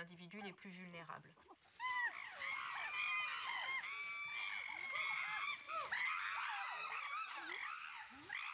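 A group of chimpanzees calling: many high, overlapping screams that begin about two seconds in and keep going.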